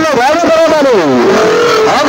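A voice singing in long wavering notes through a horn loudspeaker, loud throughout, sliding down in pitch about a second in and then holding a lower note.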